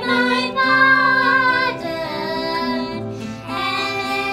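Three young children singing a song together, with long held notes.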